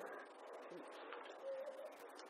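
A faint, short, low bird call about one and a half seconds in, over quiet room tone.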